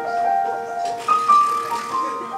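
Live instrumental introduction to a slow show tune: a keyboard plays soft held notes that shift every half-second or so, with a brighter shimmer coming in about halfway through.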